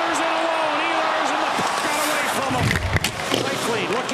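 Ice hockey game sound in an arena: a steady crowd din with sharp clacks of sticks and puck on the ice, and a heavy low thud about three-quarters of the way in.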